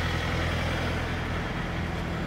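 Semi-truck diesel engine idling, a steady low hum.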